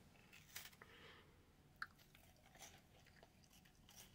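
Faint chewing of a bite of Kit Kat, the crisp wafer crunching in a few soft clicks, otherwise near silence.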